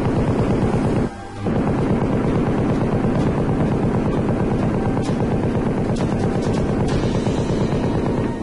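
M60 7.62 mm machine gun firing long automatic bursts: a rapid, even run of shots, broken by a short pause about a second in.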